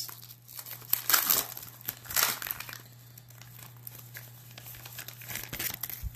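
Wrapper of a Diamond Kings baseball card pack being torn open and crinkled in irregular bursts, loudest in the first two and a half seconds, then softer crinkling.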